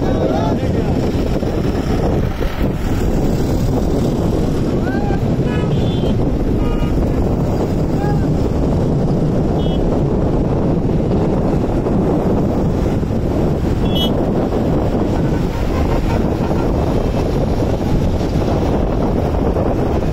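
Steady noise of a long convoy of SUVs and jeeps driving past on a highway, heavily buffeted by wind on the microphone.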